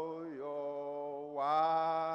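A man singing slowly in long held notes. The voice dips in pitch about a third of a second in, then swells into a louder, higher held note near the end.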